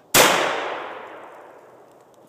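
An exploding target detonating as it is hit by a shot from a Benelli Nova pump-action shotgun, heard as one loud blast about a tenth of a second in. Its echo then dies away over about a second and a half.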